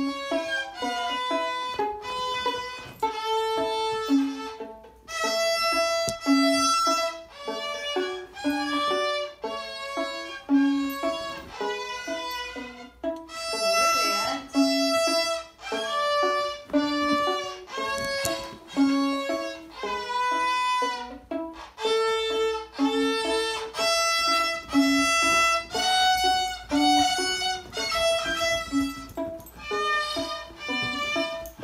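Beginner's small violin being bowed, a steady stream of short, separate notes in an even rhythm.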